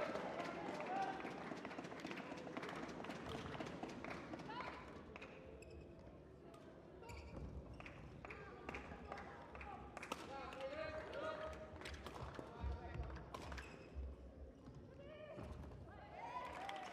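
Badminton doubles rally: rackets striking the shuttlecock in a string of sharp clicks, with short shoe squeaks and feet thudding on the court, mostly in the second half. Voices in the hall are heard faintly underneath.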